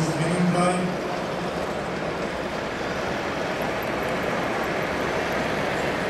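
Steady, even background noise of a busy hall, with a man's voice ending about a second in.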